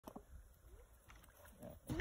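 Quiet outdoor ambience with a faint low rumble and a few soft clicks; a person's voice begins right at the end.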